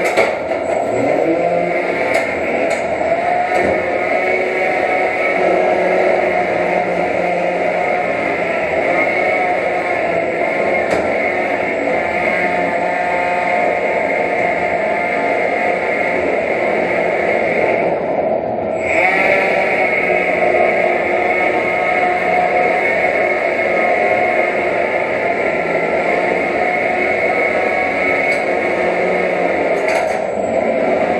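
Steady whine of small electric motors in antweight combat robots, including a spinning weapon running at speed. The sound briefly dips about two-thirds of the way through.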